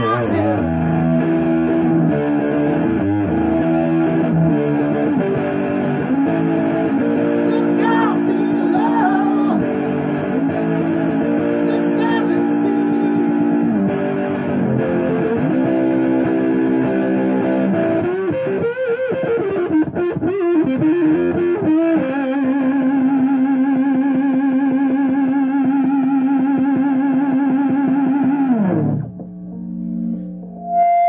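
Electric guitar played through an amplifier: a lead passage of sustained notes and string bends. It ends on one long note held with wide vibrato that slides down and dies away about a second before the end.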